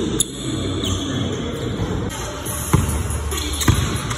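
Basketball dribbled on a hardwood gym floor, a few sharp bounces at uneven intervals.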